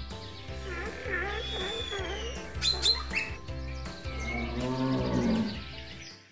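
Several animal calls laid over background music: warbling calls early on, a long falling high call in the middle, short sharp calls about three seconds in, and a low drawn-out, moo-like call about five seconds in.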